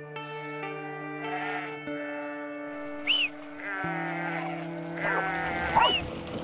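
A flock of sheep bleating repeatedly, the calls overlapping more toward the end, over background music of sustained chords.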